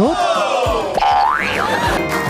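Cartoon sound effects added in editing, over background music: whistle-like sliding tones, one falling, then a comic 'boing' that rises and drops back about a second and a half in.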